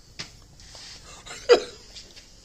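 A man's short chuckles: two brief bursts, a faint one just after the start and a louder one about a second and a half in.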